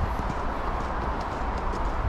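Footsteps crunching on packed snow and ice at a walking pace, over a steady low rumble.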